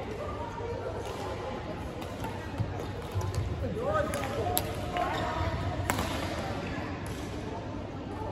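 Badminton rally: a string of sharp racket strikes on the shuttlecock, with rubber sports shoes squeaking on the court floor around the middle, over a steady chatter of voices in the hall.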